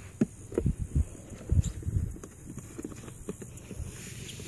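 Irregular low thumps and knocks from hands handling a fibreglass RC speedboat hull and working at its hatch cover; the boat's motor is off.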